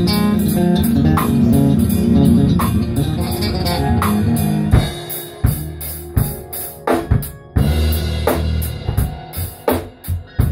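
Live jam by an electric bass and a drum kit, with keyboards. About halfway through, the steady low bass line thins out and separate sharp drum hits stand out.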